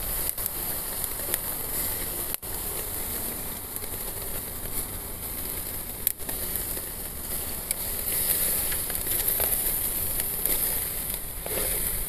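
Sliced beef chuck sizzling steadily with small crackles as it cooks over charcoal on a barbecue grill.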